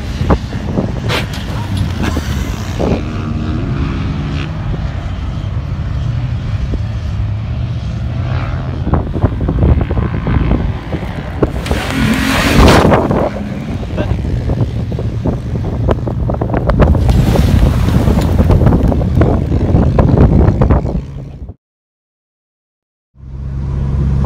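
Pickup truck engine revving hard as the truck drives across the sand dunes and jumps, with a loud rush of noise around the jump about twelve seconds in. The sound cuts off about two seconds before the end.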